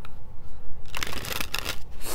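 A deck of cards being shuffled by hand: a dense papery rustle lasting about a second, starting just before the middle.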